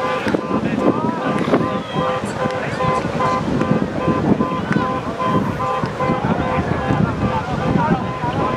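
Many voices of rugby players and sideline spectators calling and shouting over one another, with wind buffeting the microphone.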